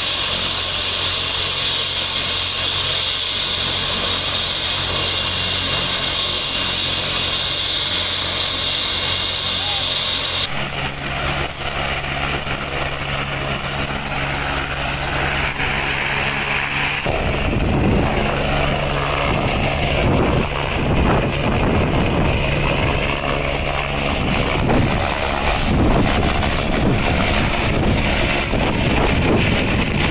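Air-ambulance helicopter running with its rotors turning, a steady turbine and rotor sound. After a cut about two-thirds of the way through, the rotor chop grows louder and more distinct as the helicopter lifts off and flies.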